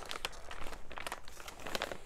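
Thin plastic bag crinkling and rustling as hands rummage through it, a quick run of small crackles.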